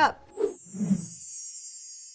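A high, airy hiss that starts about half a second in and slowly fades away: an edited-in transition sound effect over a product caption. Two short murmured voice sounds come in the first second.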